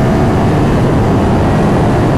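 Ducati Hypermotard 939's two-cylinder engine pulling under acceleration at road speed, mixed with heavy wind noise on the microphone.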